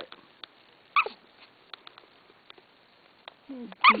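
A three-week-old goldendoodle puppy gives one short, high whimper about a second in, with a few faint ticks around it.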